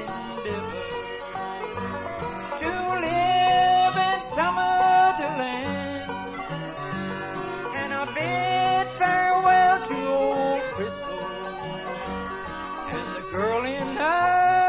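Bluegrass band of fiddle, banjo, mandolin, guitar and upright bass playing an instrumental break after a sung verse. The fiddle leads with notes that slide up into long held tones over banjo rolls and bass.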